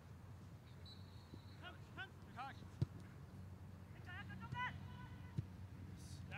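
Distant voices calling across an open soccer field over a steady low outdoor rumble, with one sharp thud of a soccer ball being kicked near the middle.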